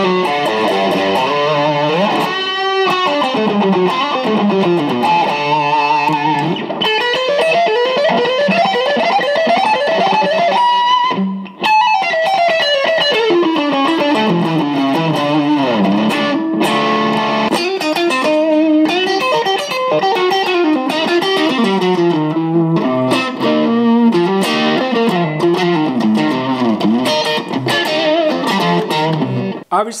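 Kiesel HH2 headless electric guitar played through an amp: fast single-note lead runs climbing and falling up the neck, with a held high note and a short break about eleven seconds in.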